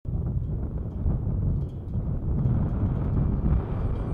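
Low, gusty rumble of wind, deep and unsteady, with little high-pitched content.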